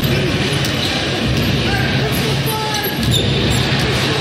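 A basketball being dribbled on a hardwood court during an NBA game, over a steady low background hum of arena sound.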